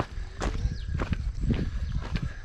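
A hiker's walking footsteps, about two steps a second, over a steady low rumble.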